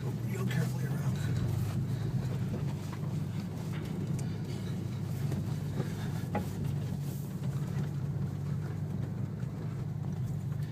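Porsche 911 Turbo S (997) twin-turbo flat-six engine heard from inside the cabin, running steadily at moderate engine speed as the car cruises, with road noise underneath.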